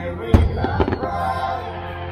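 Aerial fireworks bursting: one sharp bang about a third of a second in, then several smaller pops and crackles.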